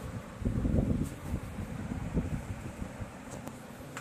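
Low rumbling noise on the phone's microphone, strongest from about half a second to a second in, then weaker and uneven.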